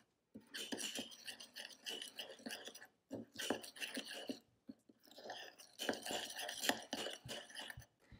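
A metal spoon stirring a thick, wet flour-and-water paint paste in a small bowl: a run of quick squelchy scrapes and light clinks against the bowl, with short pauses about three and about five seconds in.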